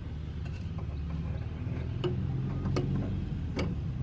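Intake pipe being worked by hand down into a car's engine bay: several scattered clicks and light knocks as it presses against the surrounding parts, over a low steady rumble.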